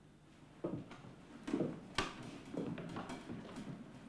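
Quiet studio-set sounds of actors moving: a few soft knocks and rustles, with one sharp click about two seconds in.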